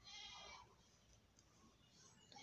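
A faint animal bleat, one short call of about half a second at the start; otherwise near silence.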